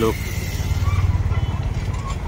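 A motor vehicle's engine running, a steady low rumble with a fast, even pulse.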